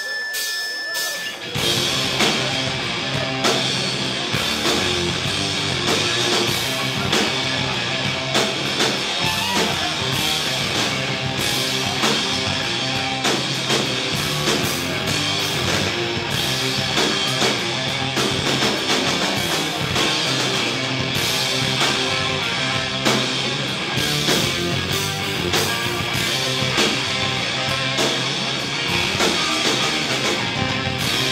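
Live heavy metal band playing: distorted electric guitars, bass and a Tama drum kit. A brief thin high whine opens, and the full band comes in about a second and a half in, then plays on loudly and steadily.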